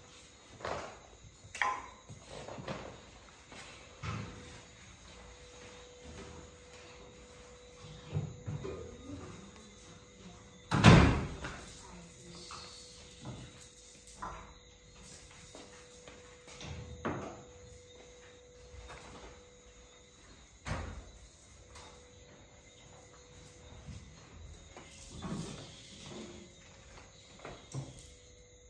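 Scattered knocks and bumps of movement in a room, with one loud thump about eleven seconds in, over a faint steady hum.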